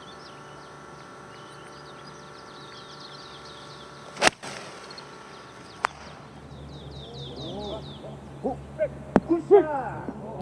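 A golf club strikes the ball on a long fairway approach shot: one sharp crack about four seconds in. Birds chirp in the background.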